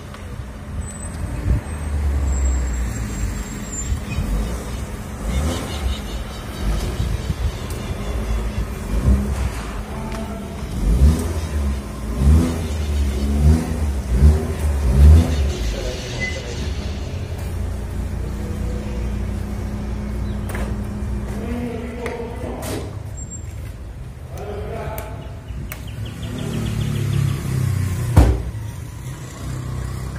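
A police patrol car's engine running as the car pulls up and parks, its note rising and falling several times while it manoeuvres. The engine stops about two-thirds of the way through, and a sharp knock comes near the end.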